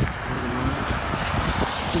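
A car driving past on a wet road: a steady noise of tyres on melt water and slush.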